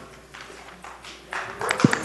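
Applause starting about a second and a half in and quickly building, with many individual sharp claps; before it, a few light taps in an otherwise quiet room.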